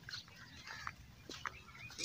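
Quiet outdoor ambience: a low rumble with a few faint, brief clicks or chirps scattered through it.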